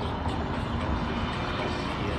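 Wind buffeting an outdoor microphone: a steady, low rumble with no distinct events.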